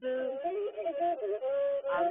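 Masinko, the one-stringed bowed fiddle of Ethiopian azmari music, playing a single melodic line that wavers and slides between notes.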